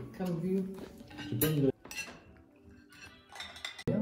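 Dishes and cutlery clinking at a dining table, mixed with brief snatches of voices. The sound drops away abruptly a little under two seconds in and stays faint after that.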